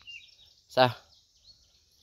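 Faint bird chirps outdoors, high and thin, with one short spoken word about a second in.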